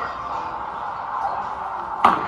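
Steady background din of a busy indoor arcade: indistinct chatter and music, with no distinct impact or rolling sound.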